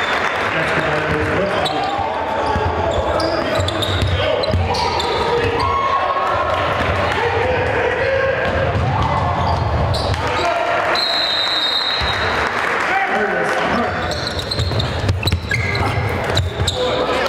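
Basketball game sound in a gym: a basketball dribbling on the hardwood under continuous crowd and player voices. A short, steady high tone sounds about eleven seconds in.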